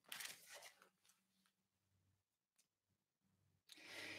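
Sheet of notepad paper rustling as it is rolled up in the hands, a short burst in the first second, then a faint steady hum; another short noisy burst comes near the end.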